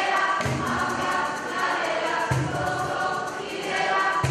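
A youth choir singing in harmony, with low bass notes sounding underneath about every two seconds.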